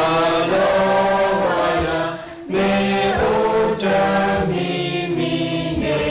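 Several voices singing a slow song together in harmony, in long held phrases with a brief pause about two and a half seconds in.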